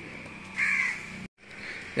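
A crow cawing once: a single short, harsh call about half a second in. The sound cuts out abruptly a little after one second in.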